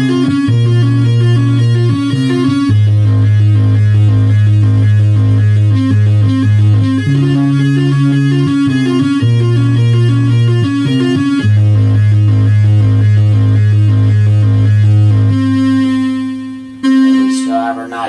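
Home-built analog modular synthesizer playing a square-wave tone with its pulse width swept by an LFO: quick runs of short notes over a sustained low note. Near the end one held note fades away, the fall-off on release that the builder is still tweaking.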